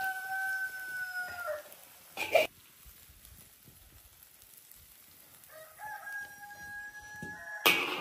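A rooster crowing twice, each crow one long held call: the first at the start, dropping off after about a second and a half, the second near the end. A brief clatter about two seconds in.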